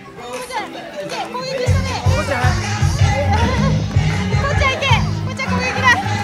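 Young children shrieking and shouting as they play, over music whose bass beat comes in about two seconds in.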